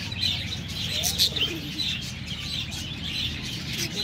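A flock of budgerigars chattering: many overlapping high chirps and warbles, with one louder chirp about a second in.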